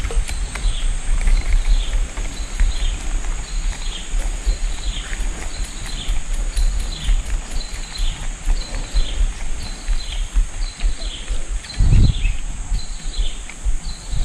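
Outdoor riverside ambience: a steady high buzz, with a short falling chirp repeated about every half second to a second, over low rumble from wind on the microphone. There is a dull thump about twelve seconds in.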